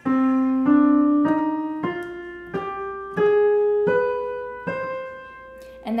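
Piano playing the C harmonic minor scale up one octave: eight notes struck one at a time, C, D, E flat, F, G, A flat, B, C, about two-thirds of a second apart. The step from A flat to B near the end is the wide augmented second that sets this scale apart.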